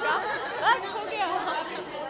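Several people talking at once: indistinct chatter of voices, with no single clear speaker.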